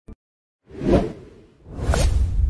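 Whoosh sound effects of an animated logo intro: a short click, then a swelling whoosh peaking about a second in, and a second whoosh building near the end over a low rumble.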